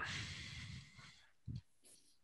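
Faint breathing noise on a headset microphone, fading out within about a second, then one soft low thump.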